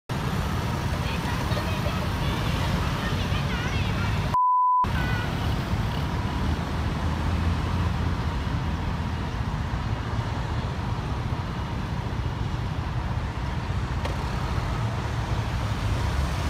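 Street traffic at a busy intersection: a steady low rumble of passing cars and scooters, with faint voices. About four and a half seconds in, a half-second censor bleep replaces the sound.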